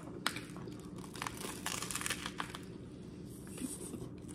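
Close-up crunching and crackling of bites into a chicken Caesar salad sandwich on crisp toasted bread, a run of short crackles that are thickest in the middle.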